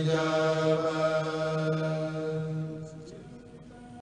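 A kourel, a group of men, chanting a Mouride khassida (qasida) in unison, holding one long note that fades away over the last second or so.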